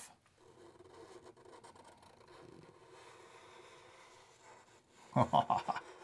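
Faint scratching of a Sharpie marker drawing on paper, then a short laugh near the end.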